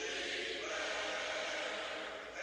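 A hymn sung by a group of voices, holding long, sustained notes.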